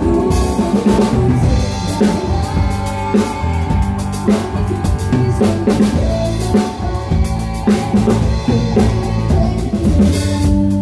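A live band playing with a steady beat, heard from right behind the drum kit: kick drum, snare and Zildjian K cymbals up front, with electric guitar and bass beneath.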